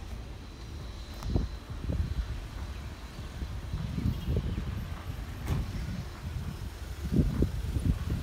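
A small hatchback car driving slowly up and stopping, its engine faint under a low, gusty rumble of wind on the microphone.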